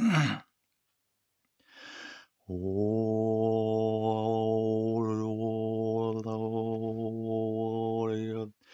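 A man overtone singing: after a short breath, a low note is held from about two and a half seconds in, with a high whistling overtone above it that shifts in pitch around the middle.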